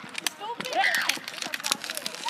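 A child running on foot: quick, irregular footfalls, with a high, shouted voice calling out about half a second to a second in.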